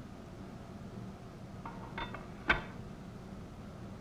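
Light clinks of the heat-resistant insulating beads on a galley range element's flexible cables as they are handled: two small clicks about two seconds in and a sharper one just after, over a steady low hum.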